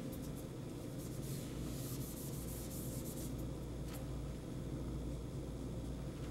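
Dry-erase marker drawing on a whiteboard: faint scratchy strokes with a few light taps, over a steady low hum.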